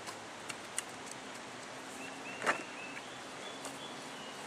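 A garden rake working through damp garden soil to spread it and break up clumps: a few faint scrapes and ticks, with one louder strike about two and a half seconds in.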